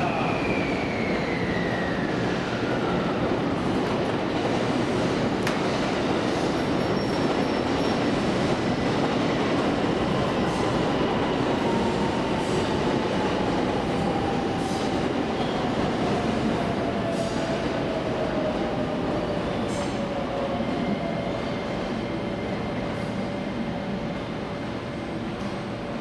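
Electric train running through a station: a steady rumble with a motor whine that falls in pitch twice, as a train slows.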